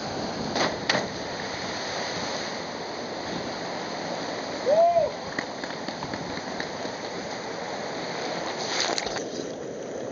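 Steady rush of water in a canyon pool fed by cascades. Sharp splashes come about a second in and again near the end, as a jumper hits the water and the water churns close by. A short cry that rises and falls in pitch is heard about halfway.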